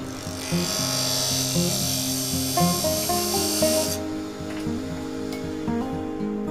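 Pen mill (barrel trimmer) cutting the end of a wooden pen blank turning on a lathe: a steady hiss for about the first four seconds, then it stops. Background music plays throughout.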